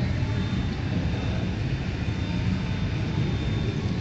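Steady low rumble of a large mall's indoor background noise, with a faint thin high tone over it.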